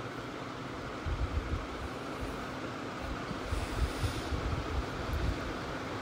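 Vegetables cooking gently in oil in a kadai: drumstick pieces, onion and turmeric. It makes a steady, quiet noise with low rumbles and a faint steady hum.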